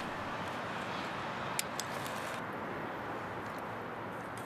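Steady outdoor background noise, with a few light clicks from a metal carp-fishing rod pod being handled and set up: one at the start and two close together about a second and a half in.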